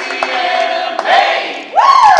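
A mixed a cappella vocal group singing held chords in close harmony, with one voice sliding up and back down near the end.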